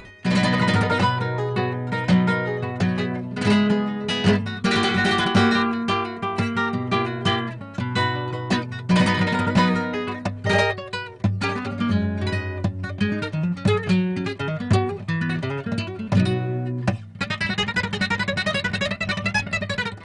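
Solo acoustic guitar playing flamenco: quick plucked melodic runs over bass notes, mixed with strummed chords, pausing briefly near the end.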